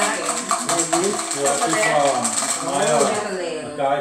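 Dice clattering and rattling on a table in quick repeated clicks, under several people talking at once. The clicking thins out near the end.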